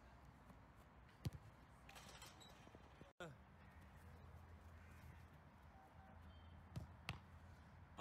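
Near-quiet outdoor background broken by a sharp thump of a football being struck or caught about a second in, and two fainter ball thumps near the end; the sound drops out for an instant about three seconds in.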